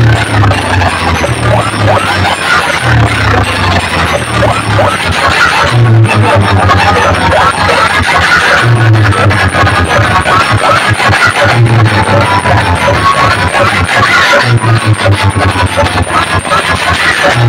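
A DJ sound-box rig playing dance music at very high volume, with a heavy bass figure recurring about every three seconds, heard close up in a dense crowd.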